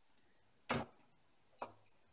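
A knife tip scraping twice in a small metal tin of fatwood shavings, each scrape brief, about a second apart.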